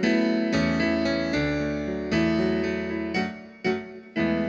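Digital stage piano playing the slow opening chords of a song, each chord struck and left to ring, with a short lull near the end.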